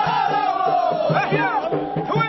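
Men singing Ahidous chant together in a loud chorus, their held note sliding slowly downward over a steady low beat. About a second in, high cries rise and fall over the chorus.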